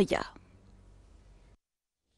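The last syllable of a news voice-over trails off, leaving faint background hiss, and the sound then cuts out to dead silence about one and a half seconds in.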